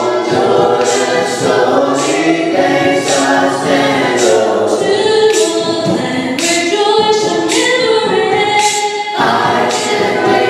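A small mixed choir of men's and women's voices singing a gospel hymn together, in held, sustained notes.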